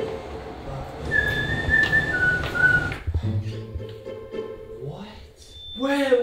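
A two-note whistle, a held higher note dropping to a slightly lower one, each under a second long, over quiet background music. A voice starts near the end.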